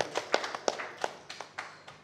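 Scattered hand clapping from an audience, thinning out and fading away by the end.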